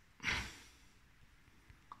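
A man's short breath out, a sigh, about a quarter second in, fading quickly to quiet room tone.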